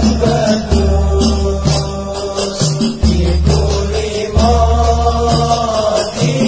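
A man chanting Javanese devotional verses in sholawat style over a backing track, with long deep bass notes that change every second or so and a steady ticking, rattling percussion beat.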